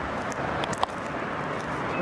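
Steady outdoor background noise with one sharp click a little under a second in.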